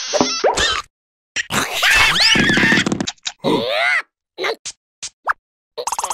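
Cartoon sound effects and wordless character vocalising: a string of short pops and quick pitch glides, broken by silences.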